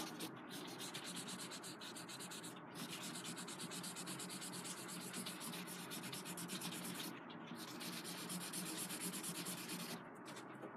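A paper blending stump rubbed quickly back and forth over a graphite pencil drawing on watercolour paper: a faint, steady scrubbing that smooths the pencil tone into the paper.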